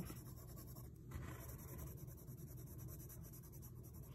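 Faint, soft scratching of a red coloured pencil shading on drawing paper, laying down even hatching in layers.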